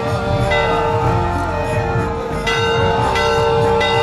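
Large brass temple bell struck three times, its ringing carrying on between strikes.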